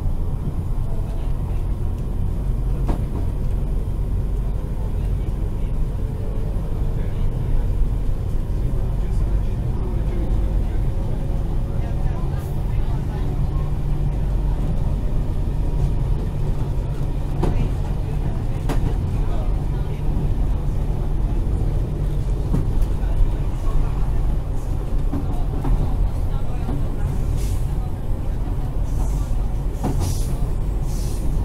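Steady low rumble of a Ganz-MÁVAG-built HŽ 6111 electric multiple unit running at speed, heard from inside the carriage, with a few faint clicks from the running gear.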